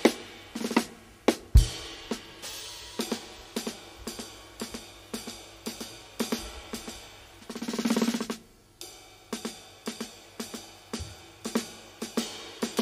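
Drum kit played freely, with scattered drum and cymbal strikes at an uneven pace. About seven and a half seconds in, a roll swells and then breaks off suddenly.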